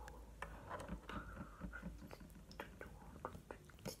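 Faint, irregular small clicks of homemade water slime being squeezed and kneaded in the hands.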